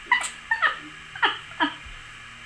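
A dog whimpering: five or six short, high whines, each falling in pitch.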